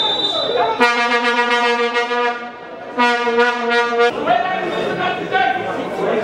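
A horn blown twice, each a long, steady, unchanging note lasting about a second, with a short gap between them, over the sound of voices around the stadium.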